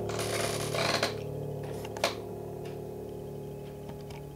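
The last chord of an upright piano ringing on and slowly fading. Over it, a brief rustle comes just after the start and a sharp click about two seconds in.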